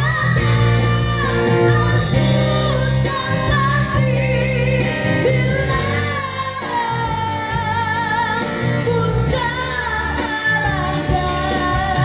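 A woman singing through a microphone and PA, accompanied by an amplified acoustic guitar, in a live busking performance; she holds long notes with vibrato.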